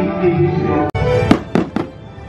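Fireworks show music playing, a brief dropout about a second in, then three firework shells bursting in quick succession, the first the loudest.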